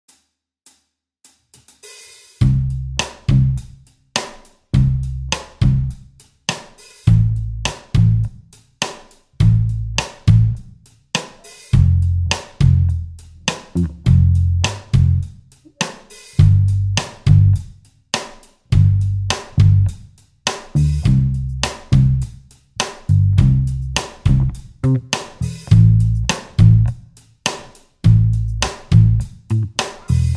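Pop backing track in C major: a simple drum-kit groove with hi-hat, snare and bass drum under a bass line following a C–Am–F–G progression. A few faint ticks count it in before bass and drums come in about two seconds in.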